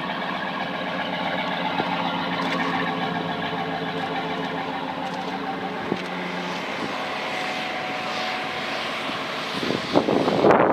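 2009 Cadillac Escalade's V8 idling steadily; its low hum weakens about two-thirds of the way through.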